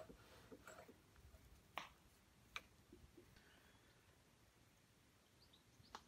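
Near silence, with a few faint clicks from the tailstock handwheel and quill of a vintage Boxford AUD metal lathe being worked by hand; two slightly sharper clicks come a little under a second apart, about two seconds in.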